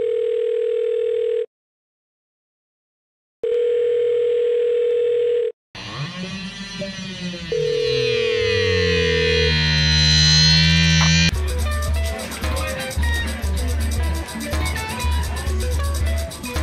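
A steady telephone tone sounds twice, about two seconds each with a two-second gap. A swirling sound of rising and falling sweeps follows, and music with a steady beat comes in about eleven seconds in.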